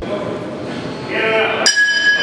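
A single strike on a small bell or gong about one and a half seconds in, ringing on steadily with a bright metallic tone, the signal that starts the round. A voice calls out just before it.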